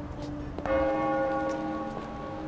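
Church bell ringing: a fresh stroke about two-thirds of a second in, its tone hanging on and slowly fading over the lower hum of an earlier stroke.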